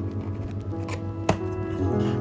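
A cardboard mailer box being opened by hand: light scraping and tapping of the cardboard, with one sharp snap just past halfway as the tucked lid flap pulls free. Background music with sustained notes plays throughout.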